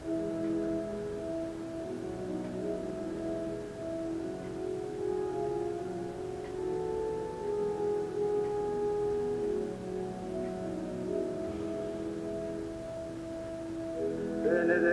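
Organ playing a slow interlude of sustained chords, each chord held for a second or more before moving to the next, with a higher held note sounding above the chords in the middle.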